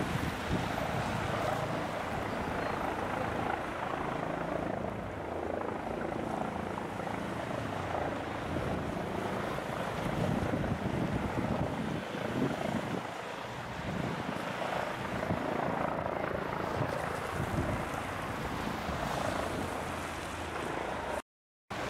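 Eurocopter EC135 police helicopter flying low overhead: a steady drone of rotor and turbines with the rotor's low beat underneath, swelling and easing a little as it circles.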